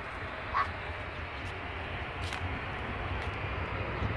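Distant jet aircraft engines running, a steady rush with a low rumble underneath that grows a little louder over the last couple of seconds. A brief high squeak sounds about half a second in.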